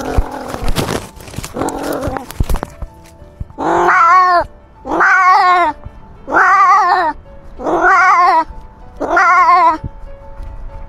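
A cat caterwauling: five drawn-out, wavering yowls, one after another about a second and a half apart. They follow a couple of seconds of rustling and scuffling.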